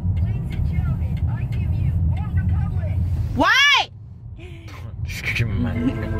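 Low, steady rumble of a car's cabin while driving, with faint voices over it. Just past halfway a single loud tone rises and falls in pitch, then the rumble drops away.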